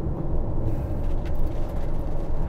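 Steady low rumble of engine and tyre noise inside the cab of a moving camper van.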